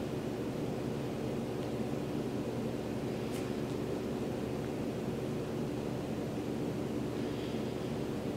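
Steady room tone: a constant low hum under an even hiss, with one faint tick about three and a half seconds in.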